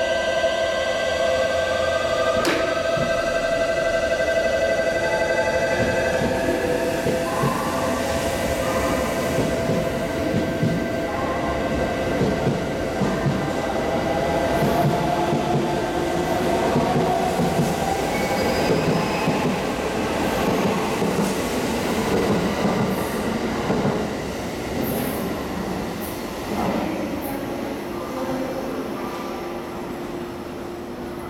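JR West 683 series 4000-subseries limited express electric train pulling away from the platform. Its traction motors give several whines that rise in pitch over the first few seconds as it speeds up, with one sharp knock about two and a half seconds in. Then the rumble of the cars rolling past grows and fades away near the end as the train leaves.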